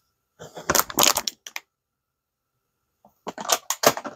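Clicks and light knocks from the ACMER P2 laser module being handled and turned over in the hands. They come in two short clusters, one from about half a second to a second and a half in, the other near the end.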